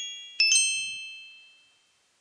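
Music box melody: two notes plucked about half a second in, ringing and slowly fading away.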